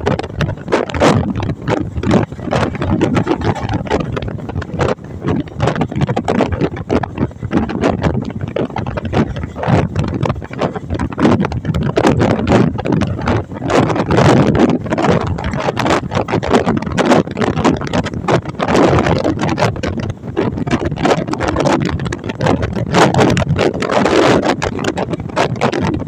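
Passenger train running at speed, heard from aboard near an open door: a loud, continuous rumble with dense rattling and clatter of wheels on the track, mixed with wind.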